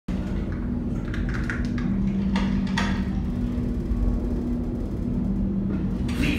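Steady low hum of the ride room's starship-interior ambience, with a deep rumble under it. A few short knocks or clanks come in the first three seconds.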